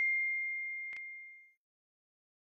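An iPhone notification chime: one clear bell-like tone ringing out and fading away, announcing an incoming push notification. A faint click comes about a second in.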